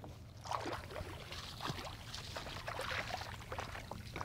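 Feet wading through shallow water, with small irregular splashes and trickles.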